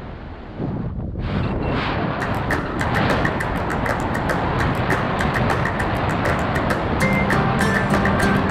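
Wind rumbling on the camera microphone under the parachute canopy, overlaid about a second in by background music that builds to a steady quick beat.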